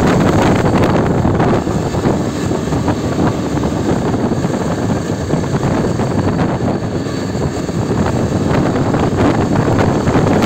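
Wind rushing over the microphone of a Yezdi Adventure motorcycle cruising steadily, with the bike's single-cylinder engine running underneath. The sound is a loud, even rush with no change in pace.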